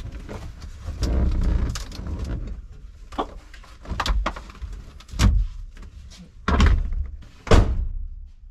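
Clunks and knocks of a 1971 Mustang's fold-down sports deck rear seat and trunk divider panel being moved and latched, about six knocks spread over several seconds, with low rumbling handling noise between them.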